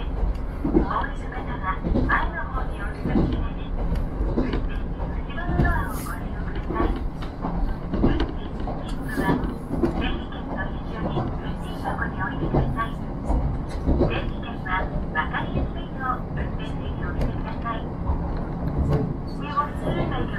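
Cabin running noise of a KiHa 54 diesel railcar under way: a steady low rumble from the engine and wheels on the rails, with a voice speaking over it.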